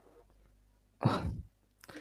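A person's short sigh into the microphone, about a second in, lasting about half a second, between stretches of near silence.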